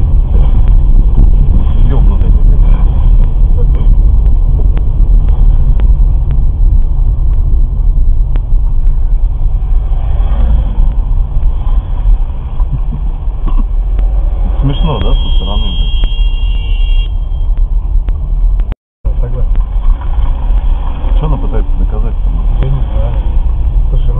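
Steady low rumble of a car's engine and tyres heard from inside the cabin while driving slowly in traffic, with a short high beeping tone about fifteen seconds in.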